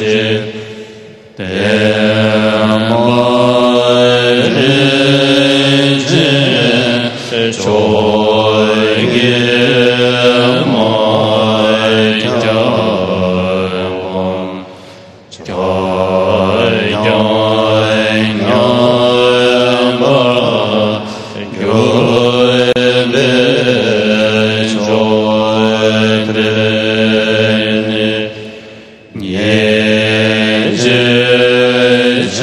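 Buddhist prayer chanted slowly and melodically, long drawn-out sung phrases with short pauses about a second in, halfway through and near the end.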